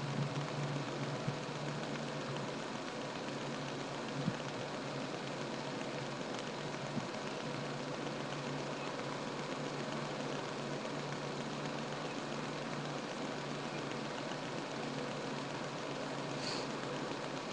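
Steady background hiss with a faint low hum, broken by a few faint knocks.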